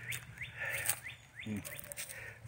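A bird calling a rapid series of short down-slurred notes, about three a second, with a few sharp clicks close by.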